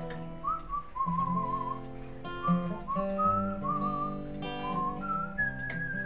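A man whistling a melody with a wavering vibrato, in short phrases, over strummed acoustic guitar chords.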